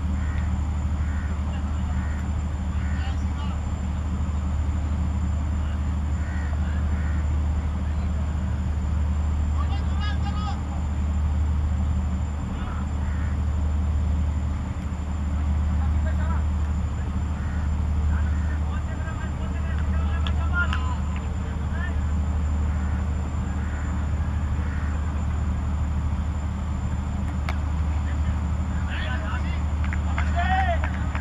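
Outdoor ambience on a cricket field: a steady low rumble that swells and eases a little, with faint, distant voices of players calling now and then.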